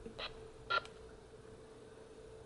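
Two short button presses on a handheld VHF airband radio's keypad while a frequency is entered. The second press has a brief beep, and a faint steady hum runs underneath.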